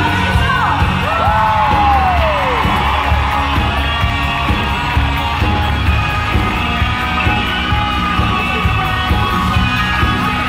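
Live pop-rock band playing through a concert PA, heard from within the audience, with a steady beat. A few whoops and cheers from the crowd rise over the music in the first few seconds.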